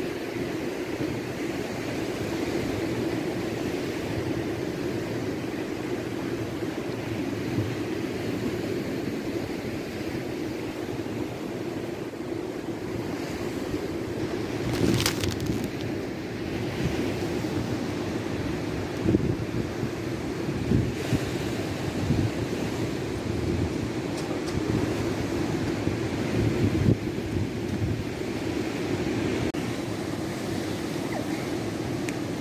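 Outdoor wind noise on the microphone over a steady background hum, with low gusts in the second half and a sharp click about halfway through.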